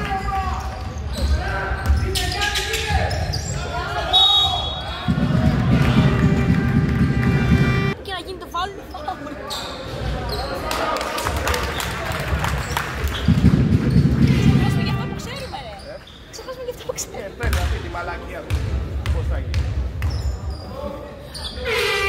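A basketball bouncing on a hardwood gym floor during play, with repeated short thuds and voices shouting in the echoing hall.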